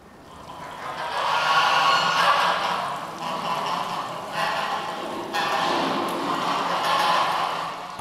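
A flock of white domestic geese honking and cackling together, starting about half a second in and going on in rough bursts.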